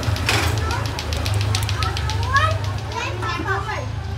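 Children's voices chattering and calling in the background, high and gliding, over a steady low hum.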